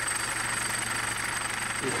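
Repurposed U.S. Mint penny coining press running while it strikes silver medallions, a steady mechanical din.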